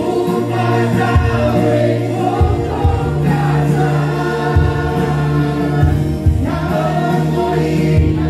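A woman singing a Portuguese gospel worship song into a microphone, with instrumental accompaniment holding long low bass notes beneath her voice.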